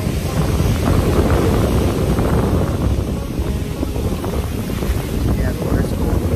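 Wind buffeting the microphone in a steady low rumble, with ocean surf breaking on the beach underneath.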